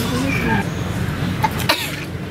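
Indistinct voices of a group of people, with two short sharp sounds about one and a half seconds in.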